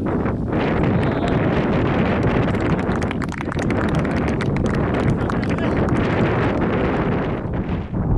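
Wind buffeting a handheld recorder's microphone: a heavy, steady low rumble with rapid crackles, thickest in the middle seconds.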